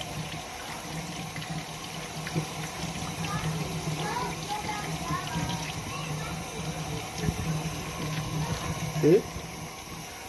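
Kitchen tap running steadily, its stream splashing onto raw chicken in a metal colander in a sink.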